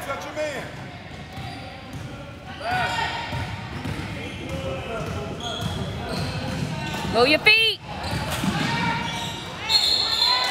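Basketball game on a hardwood gym floor: the ball is dribbled while sneakers squeak, with a quick burst of squeaks about seven seconds in. Players and spectators call out over the play, echoing in the hall.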